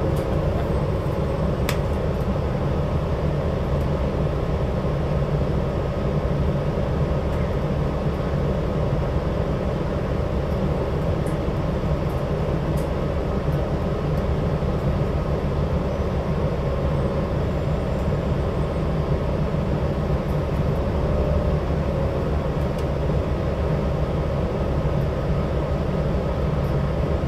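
Steady low drone of a New Flyer XD60 articulated diesel bus, heard from inside the passenger cabin: engine hum and running noise that holds even throughout.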